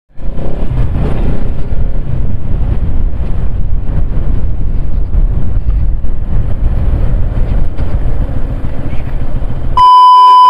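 Bajaj Pulsar NS200 single-cylinder motorcycle being ridden on a dirt road, its engine buried under heavy wind buffeting on the handlebar-mounted microphone. Near the end the riding sound cuts off and a steady beep begins: the test tone of a TV colour-bars glitch transition.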